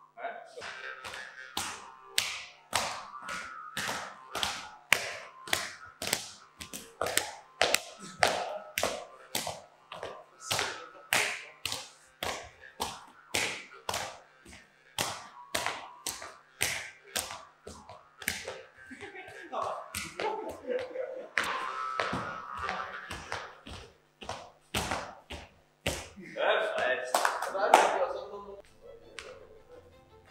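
Handclaps keeping a steady beat, about two a second; they stop near the end and voices follow.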